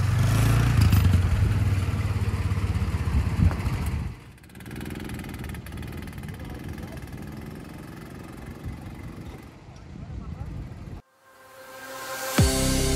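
Rental go-kart engines running loudly close by. After a cut about four seconds in, one kart's engine sounds quieter and more distant as it drives off round a corner, and the sound drops out shortly before the end.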